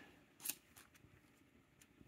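A single short swish of a glossy trading card being slid off the top of a stack about half a second in, with a couple of fainter card ticks, otherwise near silence.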